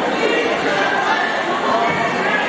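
Lucha libre arena crowd chattering and calling out, many voices overlapping at a steady level, echoing in the hall.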